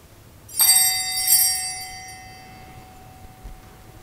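Small altar bells rung twice in quick succession, about half a second and a second in, with a cluster of high tones ringing on and fading over about two seconds. They mark the priest's communion from the chalice.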